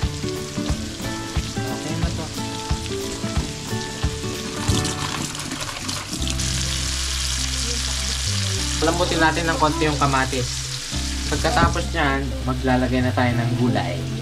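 Pork pieces and chopped tomatoes sizzling in oil in a wok while being stirred with a plastic ladle. The tomatoes are cooking down in the rendered pork fat. Background music with sustained notes and a bass line plays under the sizzle, which is loudest around the middle.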